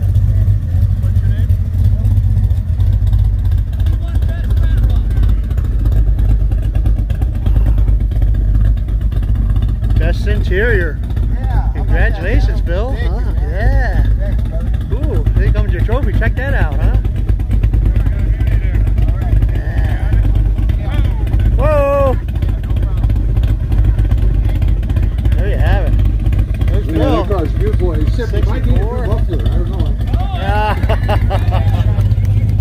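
Car engine idling with a steady low rumble, from a 1964 Chevrolet Chevelle convertible; crowd voices come in about a third of the way through.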